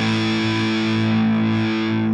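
Electric guitar on a Mexican Fender Stratocaster's neck single-coil pickup, played through distortion: one chord held ringing, steady and unchanging.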